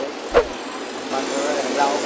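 Low voices talking over a steady hum of road traffic, with one short falling squeal about a third of a second in.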